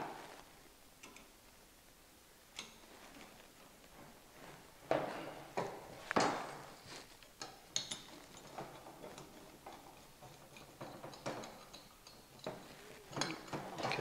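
Stainless Phillips-head screw being tightened with a screwdriver into a square nut on an antenna's base mounting plate: irregular small metal clicks and ticks, bunched about five seconds in and again near the end.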